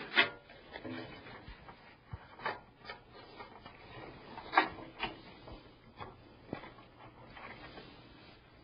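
A flat ribbon cable being handled and its connector fitted inside a metal PC case: scattered rustling with a few sharp plastic clicks, the loudest just after the start and about four and a half seconds in.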